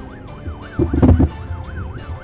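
Police car siren in a fast yelp, its pitch sweeping up and down about three times a second. About a second in, a brief louder low rumble rises over it.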